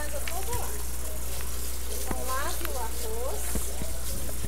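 Tap water running onto rice in a plastic colander as it is rinsed, a steady hiss coming through the played-back tutorial. A few brief voice-like glides sound around the middle, over a low steady hum.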